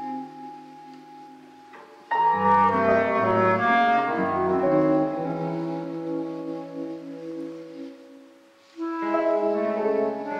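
Improvised chamber jazz for clarinet, piano and electric guitar. Soft held tones open it, a loud dense chord enters about two seconds in and slowly dies away, and the ensemble comes in again near the end.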